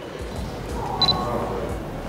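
Canon EOS R mirrorless camera's shutter clicking once about a second in, with a brief high beep at the same moment.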